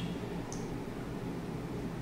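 Steady low hiss of room tone and microphone noise with no speech, and one faint short tick about half a second in.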